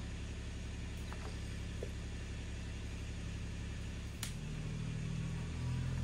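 Kubota engine running steadily. About four seconds in there is a sharp click, and the engine note shifts and grows slightly louder.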